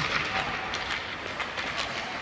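Youth ice hockey practice: skate blades scraping the ice and hockey sticks and pucks clacking, a steady clatter of many short clicks and scrapes.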